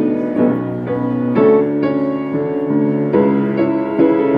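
Grand piano played solo: a ballad melody over held chords, new notes struck about every half second.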